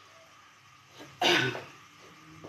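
A woman coughs once, sharply, about a second in, over faint room tone.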